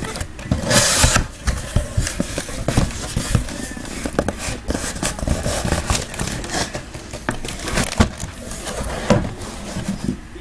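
Cardboard shipping case being opened and handled: irregular cardboard scraping, rustling and knocking, with a longer scraping rush about a second in and sharp knocks near the end.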